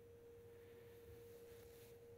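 Near silence, with a faint, steady, mid-pitched tone running underneath.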